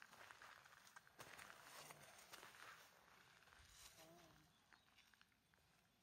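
Faint crunching footsteps on gravel, fading out in the second half.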